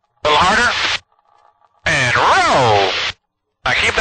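Voices over an aircraft intercom, gated to silence between utterances: a short utterance near the start, then a drawn-out vocal sound that rises and falls in pitch, and more speech near the end.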